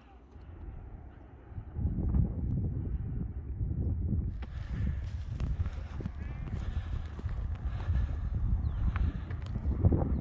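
Wind buffeting the microphone as a low, uneven rumble, with footsteps on grass and rock while walking uphill. It starts about two seconds in.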